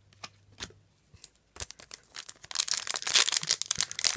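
A few light clicks of cards being set down, then, about a second and a half in, the foil wrapper of a trading-card booster pack crinkling and tearing loudly for about two seconds as it is handled and pulled open.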